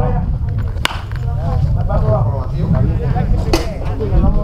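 Baseball bat cracking against a pitched ball in batting practice about a second in, then a second sharp crack near the end, over voices talking and low wind rumble on the microphone.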